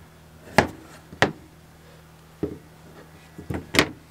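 Chef's knife cutting baby potatoes in half on a plastic cutting board: several sharp knocks as the blade hits the board, spaced irregularly about a second apart, with a quick cluster of lighter taps near the end.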